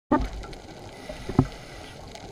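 Underwater sound picked up through a diving camera's waterproof housing: a steady muffled rumble with two sudden loud bursts, one at the very start and one about a second and a half in.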